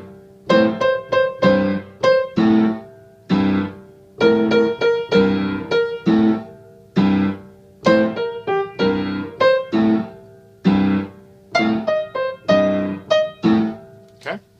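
Piano playing a blues rhythm figure: short, detached chords struck two to three times a second in an uneven, repeating pattern.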